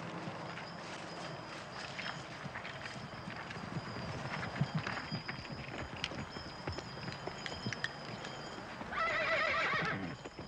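Horses' hooves knocking irregularly on ground at a walk, then a horse neighing loudly near the end.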